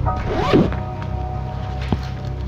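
A backpack zipper pulled open with one quick rasping sweep about half a second in, over background music of held tones; a sharp click just before the end.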